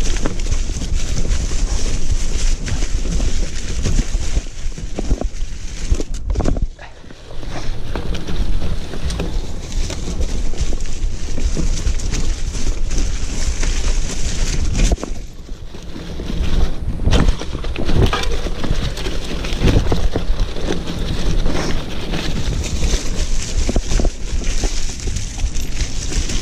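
Mountain bike riding down a leaf-covered dirt trail: tyres rolling through fallen leaves with the bike rattling over bumps, and a steady low rumble of wind on the camera microphone. The noise eases briefly twice, about seven and sixteen seconds in.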